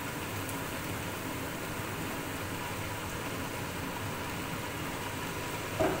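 Chicken and carrot strips sizzling in a hot frying pan as soy sauce is poured in: a steady, even hiss.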